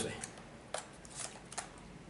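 A few faint, small clicks and scrapes of a battery being slid into a Canon 200D Mark II's battery compartment by hand.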